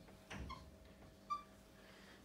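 Faint sound of a marker writing on a whiteboard: a brief stroke, then short high squeaks of the felt tip on the board, the loudest about a second and a quarter in.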